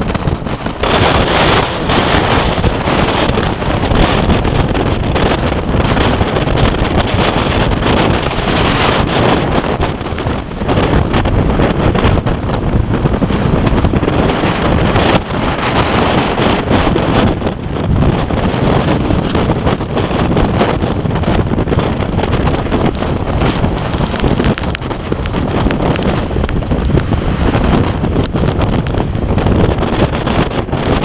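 Storm-force wind buffeting the microphone: a loud, continuous rush that swells and eases a little, with brief lulls. Heavy surf breaking on the rocky shore lies beneath it.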